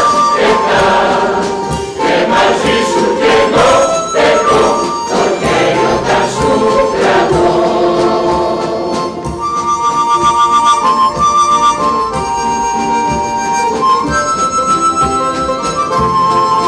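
A mixed choir of men's and women's voices singing. From about halfway through, a harmonica takes over with steady held notes and chords.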